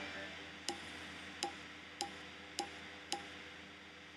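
Video slot machine reel-stop sound effect: five short clicks, one as each of the five reels lands in turn, roughly half a second apart.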